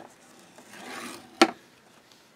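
A scoring stylus drawn along a groove of a scoring board, creasing cardstock: a short soft scraping stroke, then a single sharp click about one and a half seconds in.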